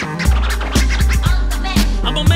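Instrumental stretch of a hip hop track: a drum beat over heavy bass, with turntable scratching.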